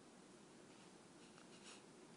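Near silence: room tone, with a couple of faint clicks in the second half.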